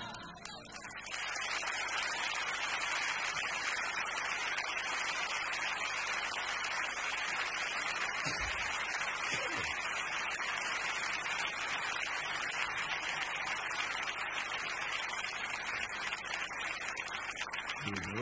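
A large theatre audience applauding, a steady, dense wash of clapping that starts about a second in and holds evenly throughout.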